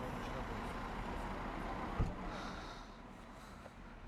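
Steady outdoor noise with a single sharp thump about two seconds in, after which the noise quietens.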